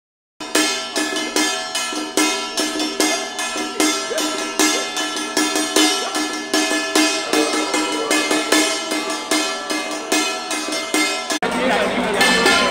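Taiwanese temple ritual percussion: metal gongs and cymbals struck in a steady, quick beat of about three strikes a second over ringing tones. It cuts off suddenly near the end.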